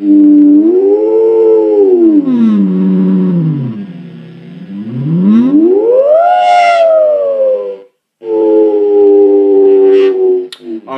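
Open.Theremin.UNO Arduino-shield theremin sounding one gliding electronic tone. The pitch rises, sweeps down very low, then climbs high and slides back down. The tone cuts out briefly near the end and returns as a steady held note. The instrument is newly built and roughly calibrated, and is more or less working.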